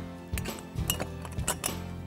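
A few light metallic clicks as a bolt is fed through an aluminum pivot plate and extrusion, over steady background music.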